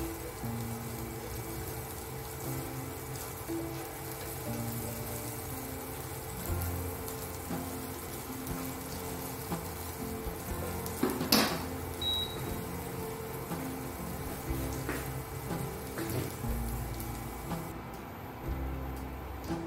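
Background music with a steady beat of low notes over onions sizzling in oil in a frying pan. A sharp knock about eleven seconds in is the loudest sound.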